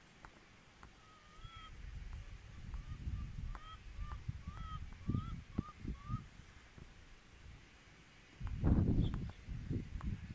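A goose honking a quick series of about ten short, upward-hooked calls over the first six seconds. Under it runs a low rumble that swells into a loud burst near the end.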